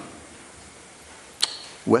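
A pause in a man's speech: quiet room tone, one brief sharp click about one and a half seconds in, and his voice resuming right at the end.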